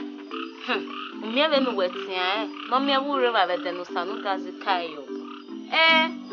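Background music of sustained low keyboard notes, with a voice on top whose pitch swoops strongly up and down.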